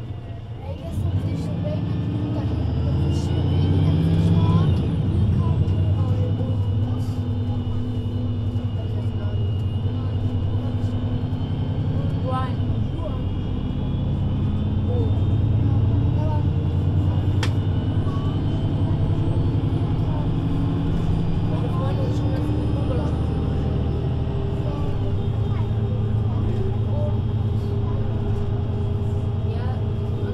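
VDL Citea LLE 120 city bus heard from on board, its diesel engine and Voith automatic gearbox pulling away about a second in with rising pitch, then running on under load as a steady drone.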